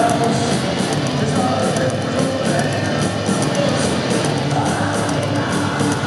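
Live heavy metal band playing loud through an arena PA: distorted guitars and a driving drum beat, with a man singing and yelling into a microphone.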